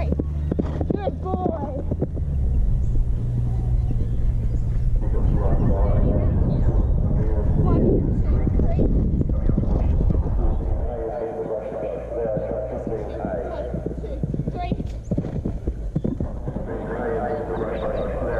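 Hoofbeats of a horse galloping on dry grass, getting louder as it comes near and passes close by about halfway through, then fading. Voices talk in the later seconds.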